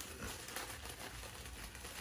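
A small plastic bag of jelly squeezed and kneaded by hand, the plastic handled faintly and steadily as the jelly is mushed into a runny jam.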